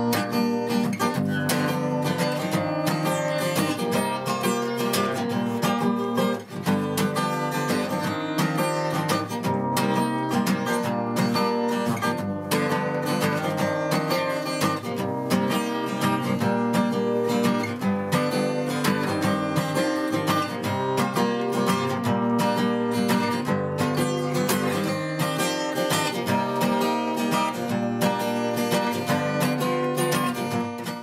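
Steel-string acoustic guitar strummed steadily, with dense rhythmic chord strokes.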